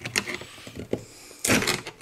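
Steel chisel scraping and prying under a flat-pack IC chip on a circuit board, making short scratchy clicks, with a louder, longer scrape about one and a half seconds in.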